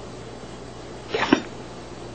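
A dog making one brief two-part vocal sound, a short snort-like noise, about a second in.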